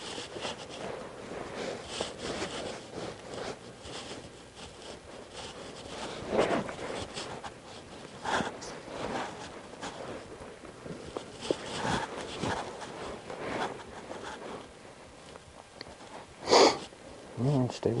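Short breathy sniffs or snorts through the nose, a scattering of them, the loudest about a second and a half before the end. A man's voice speaks a word right at the end.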